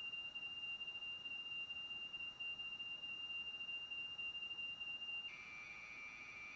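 Commodore PET cassette data signal played through a sound-mod cartridge's piezo transducer: the steady, high-pitched lead-in tone of a tape load. About five seconds in it steps down to a slightly lower, buzzier tone.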